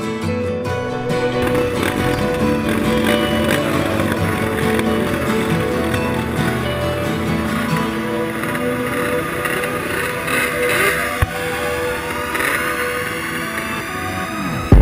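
Background music over ATV engines running at a start line, with an engine revving up in a slow rise in the second half.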